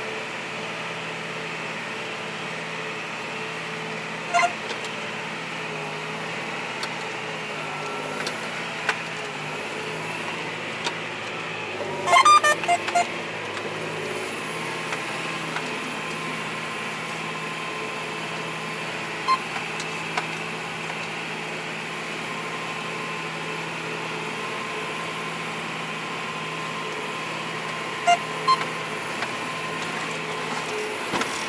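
John Deere 8335 tractor heard from inside the cab while working a field: a steady engine drone, broken by a few short sharp clicks and knocks, the loudest a quick cluster about twelve seconds in.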